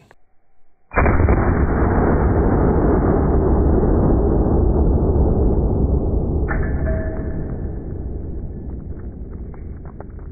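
A Desert Eagle .50 AE pistol shot slowed down for slow-motion playback. It starts suddenly about a second in and becomes a long low rumble that slowly fades, and a faint ringing tone joins about six and a half seconds in.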